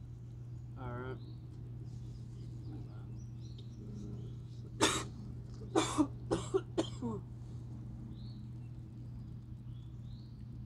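A man coughing: one sharp cough about five seconds in, then a quick run of five or six coughs and throat-clearing over the next two seconds. Faint high bird chirps come and go over a steady low hum.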